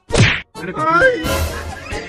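A comedic whack sound effect, a short loud swoosh falling steeply in pitch, followed by a brief gliding voice-like cry and street background noise.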